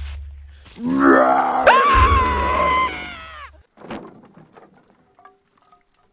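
A person's loud, drawn-out vocal cry that rises in pitch and then holds high for about a second, over a deep low rumble. It breaks off about three and a half seconds in, and only a brief faint sound follows.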